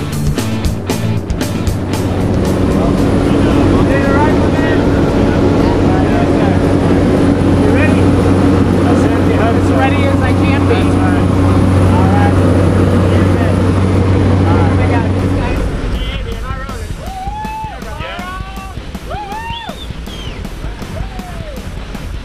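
Steady drone of a jump plane's engines and propellers heard inside the cabin, with music laid over it. About sixteen seconds in the drone drops away and rising-and-falling tones come to the fore.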